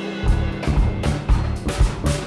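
Live band music without vocals: a drum kit and bass come in just after the start with a steady beat.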